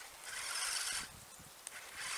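Electric drive of an RC Polaris RUSH snowmobile giving a high whine in a short burst of throttle for the first second, then dropping away to a quieter run.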